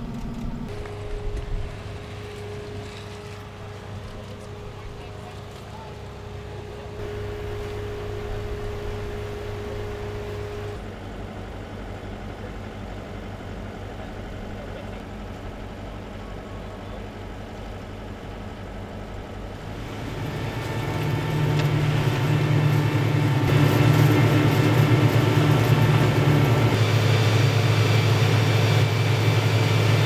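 Heavy construction machinery engine running steadily, with people talking over it; the engine hum grows louder and fuller about two-thirds of the way through.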